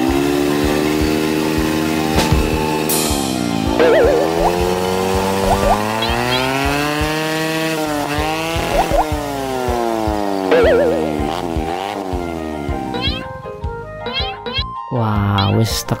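Cartoon motor scooter engine sound effect, its pitch rising and falling slowly as it revs up and eases off while riding, over background music. It stops about 13 seconds in.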